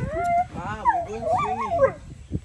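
A dog howling and whining, its pitch sliding up and down in a wavering, drawn-out call.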